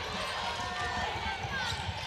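Basketball arena ambience: a steady crowd murmur with a ball dribbling on the hardwood and faint sneaker squeaks.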